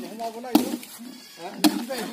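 Two axe blows chopping into a felled palm log, about a second apart, each a sharp knock, with voices talking in the background.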